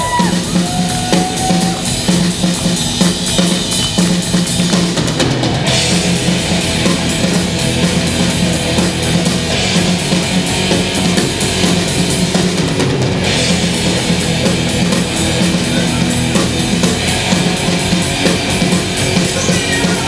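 Live heavy metal band playing an instrumental passage of the song: electric guitars, bass guitar and a full drum kit, loud and driving, with the cymbals brightening about six seconds in.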